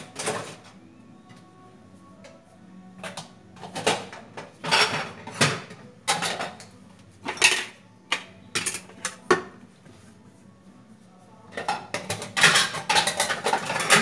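Dishes and cutlery being handled and put away, clinking and clattering in scattered bursts, busiest near the end.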